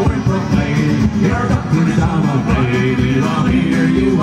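Live folk music played on two acoustic guitars with bodhrán accompaniment.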